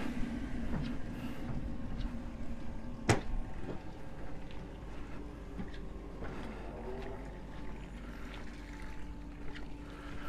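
Outdoor marina ambience: a steady low rumble with faint distant sounds, and one sharp knock about three seconds in.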